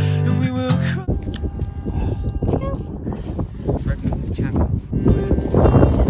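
Guitar background music with singing stops about a second in. Wind then gusts over the microphone in irregular buffets, loudest near the end.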